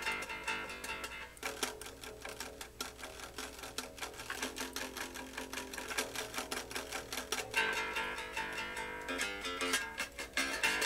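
1976 Gibson Thunderbird electric bass played with a steady run of quick, evenly repeated picked notes, riding the eighth notes; the part moves to higher notes about seven and a half seconds in.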